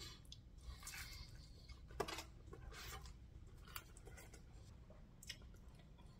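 Faint, irregular chewing of crispy thin-crust pizza, with small crunches and one sharper click about two seconds in.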